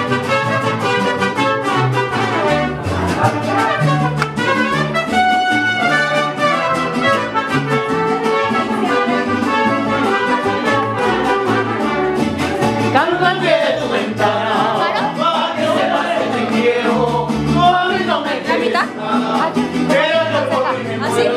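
Live mariachi band playing, with trumpets carrying the melody over a pulsing bass line.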